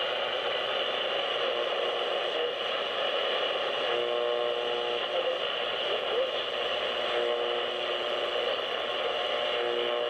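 Sony ICF-A15W clock radio's speaker playing steady AM static and interference hiss as the dial is tuned down the band, with short whistle tones coming and going, a brief rising squeal about six seconds in, and snatches of a faint station voice. The heavy interference is put down by the owner to nearby computer equipment.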